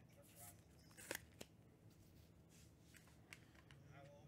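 Near silence with a few faint clicks and rustles from trading cards being handled, a slightly louder pair of clicks about a second in.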